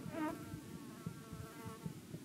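A fly buzzing close to the microphone, its pitch wavering and swelling as it moves about, loudest just after the start, over a low uneven rumble.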